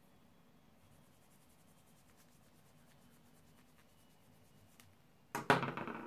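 Near-silent room tone with faint light scratches, then a sudden loud handling noise near the end as a cotton pad and bangle are handled during a polish rub test.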